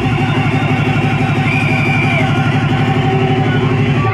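UK hardcore dance music played loud over a club sound system, with a fast, even pulse in the bass throughout and a brief high held tone about a second and a half in.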